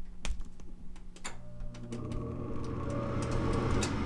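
Gas furnace draft inducer motor starting up about a second in, then running with a steady hum as the furnace begins its start-up sequence. A few sharp clicks come before and during the start.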